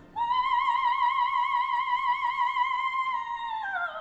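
Operatic soprano holding one long high note with a steady vibrato, entering just after the start and gliding downward near the end.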